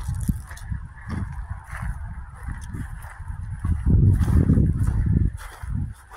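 Footsteps through dry, mown grass at a walking pace, over an uneven low rumble of wind buffeting the microphone.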